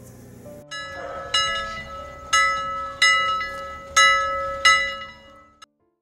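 Bell-like chimes: six struck notes, roughly in pairs, each ringing out and fading over a faint steady tone, stopping shortly before the end.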